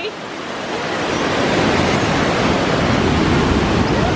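Steady rushing of a waterfall: a dense, even roar of falling water. It starts a little quieter and builds to full strength over the first second or so.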